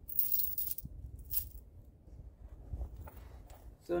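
A handful of loose coins jingling in cupped hands, in two short shakes: a longer one in the first second and a brief one about a second and a half in.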